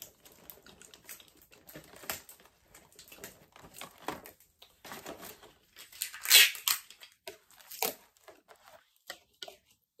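Invisible tape being pulled off the roll, torn and pressed onto plastic-packaged baby products, in scattered light crackles and clicks, with a louder burst about six seconds in.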